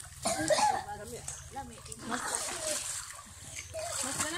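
Children's voices calling and chattering over splashing water as they swim in a hot-spring pool, loudest about half a second in.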